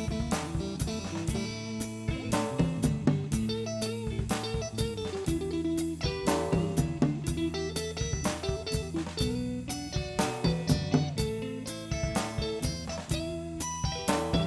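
Live band playing an instrumental passage: electric guitars over a drum kit keeping a steady beat, with no singing.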